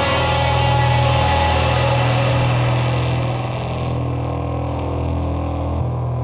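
Dark, dissonant black/death metal recording: a dense wall of sound that thins out about halfway through, leaving a heavy low drone.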